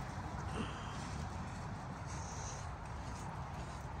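Muffled hoofbeats of a horse cantering on sand arena footing, under a steady low rumble.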